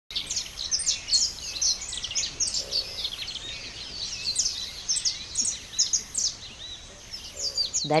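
Many birds chirping and calling at once, a dense overlapping chorus of quick, high chirps and short whistles with no break.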